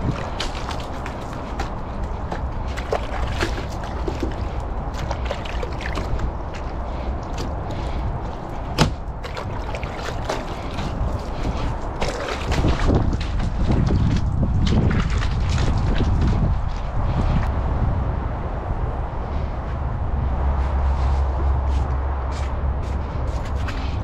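Hand car wash with a wet cloth and buckets of water: water sloshing and dripping, with scattered sharp knocks and a low rumble that grows louder from about halfway through.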